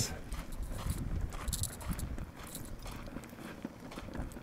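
Footsteps of a person walking on a dry dirt path: soft, fairly regular crunching steps over a low rumble.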